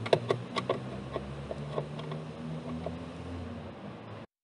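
A Phillips screwdriver working screws out of a car's plastic dashboard trim under the steering column: light clicks and ticks, quick at first, then sparser, over a faint low hum.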